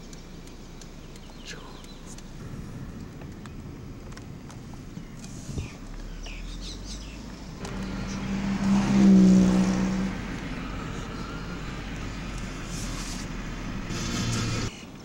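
A motor vehicle passing close by on the road: its engine sound swells to a peak a little past the middle and then fades over about two seconds.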